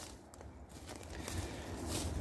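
Faint footsteps on dry leaf-covered ground, quietest at first and a little louder toward the end.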